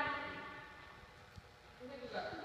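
A voice saying a short, high-pitched word that fades out at the start, then faint room noise with a few soft low knocks until another voice comes in near the end.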